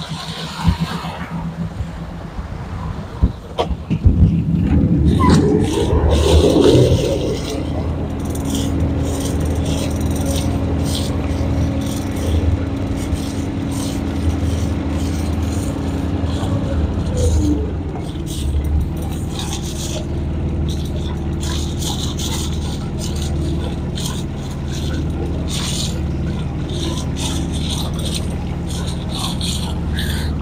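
A sailboat's small auxiliary motor running. It gets louder for a few seconds about four seconds in, as it is shifted into reverse to brake the boat, then runs steadily, with scattered clicks over it.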